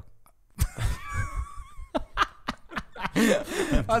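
Men laughing at a joke in short broken bursts, starting about half a second in and growing louder near the end.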